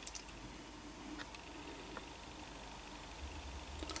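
Quiet room tone with a few faint soft clicks from a plastic blister-pack card being handled.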